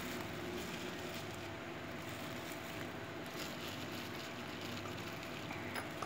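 Steady low background hum of room tone, with a few faint brief rustles.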